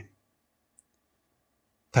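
A pause between a man's spoken phrases: near silence with one faint, very short click a little under a second in, and his voice starting again near the end.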